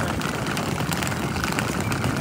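Wheels of rolling suitcases running over brick paving: a steady rolling noise with faint small clicks.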